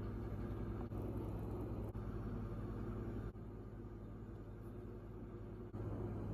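Steady low mechanical hum, like an appliance or fan motor running, with brief dropouts. The hum drops lower about three seconds in and comes back up near the end.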